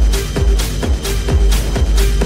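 Techno track with a steady four-on-the-floor kick drum about twice a second, each kick dropping in pitch, with hi-hats between the kicks and a repeating synth tone.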